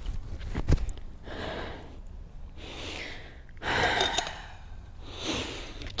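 A person breathing audibly close to the microphone, four long breaths, the third the strongest, after a single sharp knock less than a second in.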